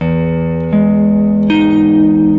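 Haar Telecaster electric guitar playing three notes one after another, each left ringing under the next, stacking up an open voicing of E major 7: root, third, then the major 7th, D sharp at the 13th fret of the D string.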